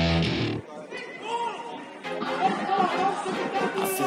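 A loud guitar-driven song cuts off suddenly under a second in. Then come football players' shouts and chatter in a large indoor sports hall. A new song starts just before the end.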